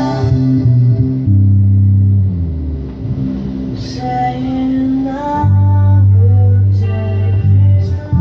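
Electric bass guitar played along with a recorded pop song that has a sung vocal line; the bass holds long low notes, changing every second or two.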